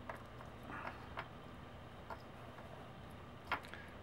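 A few faint, sparse clicks and taps from a tiny screw and the small metal cartridge shell being handled over a paper-covered table, one about a second in and the clearest near the end, over a low steady hum.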